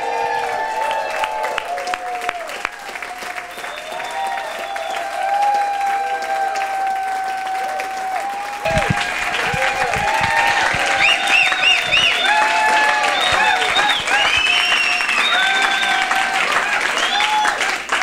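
Audience applauding with sustained clapping, with music playing over it.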